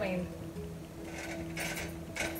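Faint scraping and sizzling of a spoon spreading ghee over a flatbread cooking on a hot pan, over a steady low hum.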